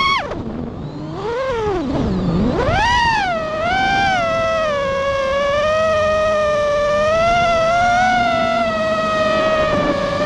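FPV quadcopter's brushless motors whining, the pitch plunging right at the start and swooping down and back up twice in the first three seconds as the throttle is cut and punched, then holding a fairly steady whine with small wobbles.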